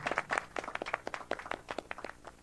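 Audience applause made of many separate, irregular hand claps, thinning out toward the end.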